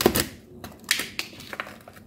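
Utility knife slicing down the side of a thin plastic bottle around an ice block: a run of irregular scraping crackles and clicks as the blade splits the plastic.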